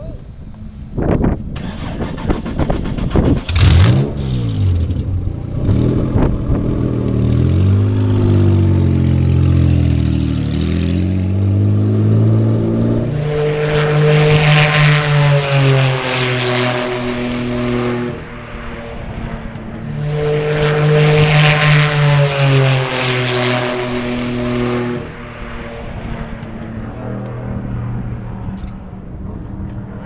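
Two-seat IndyCar's naturally aspirated racing engine starting and revving, climbing through the gears as it pulls away. It then passes at speed twice, each pass loud and dropping in pitch as it goes by, before the engine falls back to a lower running note near the end.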